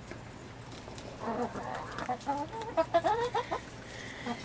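Several hens clucking as they feed on vegetable scraps: a run of short, overlapping calls that starts about a second in and goes on for a couple of seconds.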